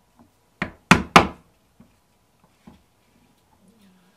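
Mallet striking a small round hand punch down through leather: three sharp knocks in quick succession about a second in, then a couple of faint taps.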